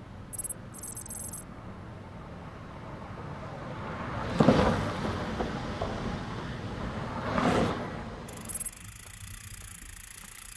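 Time-trial bike's tyres rolling fast on the wooden boards of an indoor velodrome: a steady rumble that swells twice, about four and a half and seven and a half seconds in, as the rider passes close.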